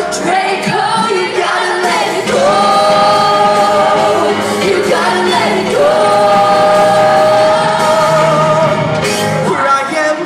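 Live singers with a rock band playing a musical-theatre song, heard from among the audience in a large hall; the vocals hold two long notes, the second running until shortly before the end.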